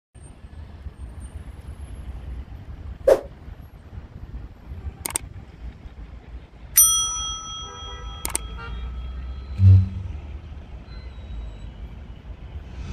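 A subscribe-button sound effect: sharp mouse clicks, then a bright notification bell ding that rings and fades, then another click. Under it runs a steady low rumble of street traffic, and a short low thump comes near the end.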